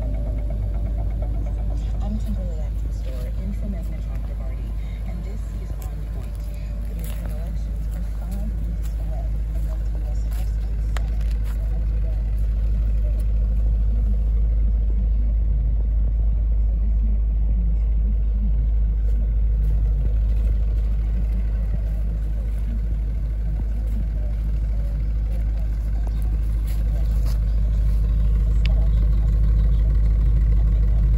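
Audi RS4 engine idling steadily, a deep low rumble that grows a little louder near the end, with faint talk over it.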